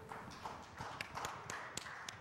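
Irregular footsteps and light knocks, a few a second, over a soft rustle. The last note of a recorded song dies away at the very start.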